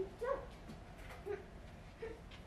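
A child's short wordless vocal sounds: a few brief squeaky hums that slide up and down in pitch, the loudest right at the start and a fainter one past the middle.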